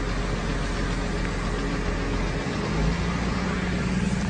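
A vehicle engine idling steadily, a low hum under an even hiss, with a slight change in the hum near the end.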